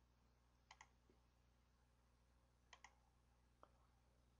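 Faint computer mouse clicks in near silence: a quick pair under a second in, another quick pair a little before three seconds, and a single click near the end.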